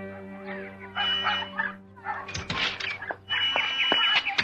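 A held chord of theme music fades out, giving way to radio-drama sound effects of birds chirping in short calls, with a few sharp clicks a little past the middle.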